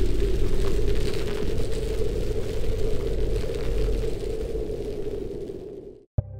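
Intro sound effect: a dense, steady rumble with faint crackle under the title card. It fades away over the last couple of seconds and stops just before the music starts.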